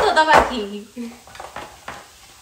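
Three short clinks of metal kitchenware, spread out over a couple of seconds with quiet between them.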